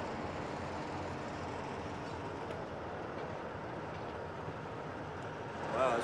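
Steady highway traffic noise from passing trucks and cars, an even rumble with no distinct events.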